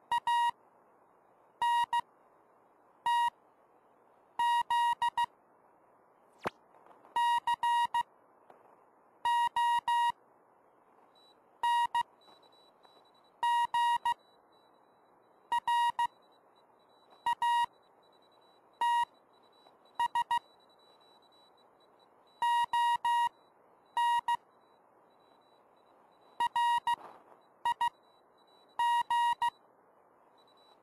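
Morse code tones from a RockMite 40 QRP transceiver on 40 m: a steady-pitched beep keyed on and off in dots and dashes, in clusters every second or two, over a constant band hiss. A single sharp click sounds about six seconds in.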